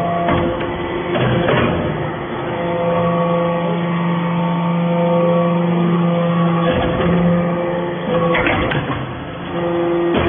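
Hydraulic aluminium-chip briquetting press running: a steady machine hum from its hydraulic power unit, with the tone shifting lower for a few seconds in the middle, and several clunks as the press cycles.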